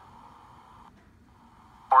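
A quiet lull of faint hiss and room tone, with a soft noise band that drops away about halfway through.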